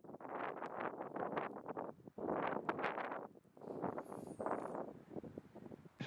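Wind blowing in gusts, each a second or so long, separated by short lulls.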